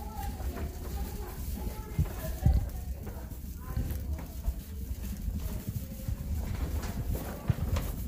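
Footsteps along a carpeted corridor with the rustle and knock of carried bags, a run of irregular dull thumps, the loudest about two and a half seconds in.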